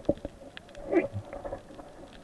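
Muffled underwater sound picked up by a camera in a waterproof housing: a few faint clicks and one short falling gurgle about a second in.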